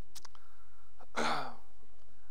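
A man sighs into a close microphone about a second in, a breathy exhale that falls in pitch, after a short click near the start. A steady low hum runs underneath.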